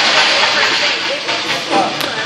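Busy gym background: a steady loud hiss of room noise with faint, scattered voices, and a sharp click at the very end.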